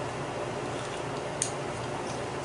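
Steady low room hum, with one short, sharp click about one and a half seconds in as the small metal parts of a kit pen are fitted together by hand.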